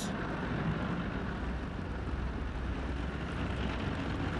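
Tank engines running, a steady low drone with no distinct bangs.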